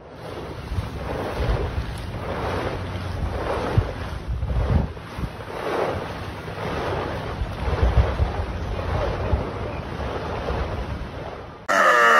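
Wind buffeting the microphone in uneven gusts over the wash of open sea. Near the end this cuts off and a loud, wavering pitched animal cry begins.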